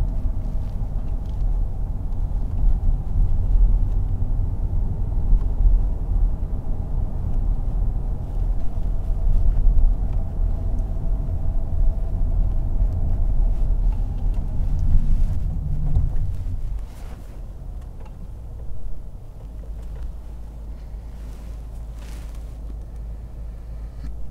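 Low, steady cabin rumble of a Mercedes-Benz S580 driving: road and drivetrain noise heard from inside the car. About 17 seconds in it drops to a quieter, even low hum.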